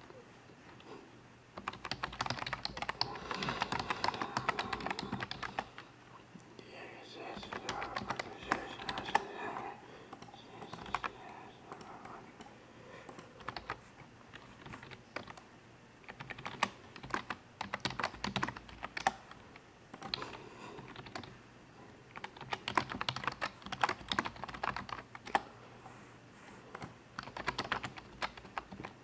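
Typing on a computer keyboard: a long run of irregular key clicks, with stretches of voices in the background.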